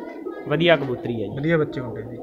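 Domestic pigeons cooing in repeated rising-and-falling calls, with a short word of speech among them.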